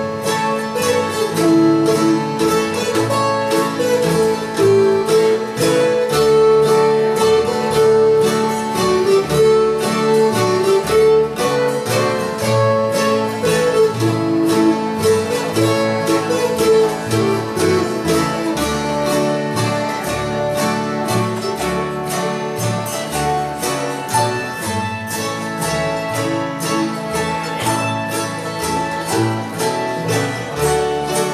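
Acoustic string band playing an instrumental country waltz: hammered dulcimer carrying a gliding melody over acoustic guitar and autoharp.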